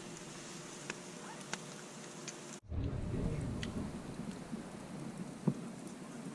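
Faint crackling of smouldering cherry-wood coals in a primitive smoker, with a few small sharp pops. After a cut about two and a half seconds in, a low rumble comes in under the crackle.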